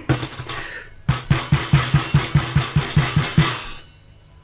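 Rapid knocking on a door, made as a shadow-play sound effect: a run of about a dozen quick, drum-like strokes at about five a second that stops shortly before the end. It is a knock to be let in.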